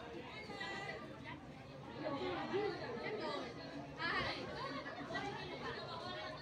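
Several voices talking and calling out over one another, with louder calls about two and four seconds in.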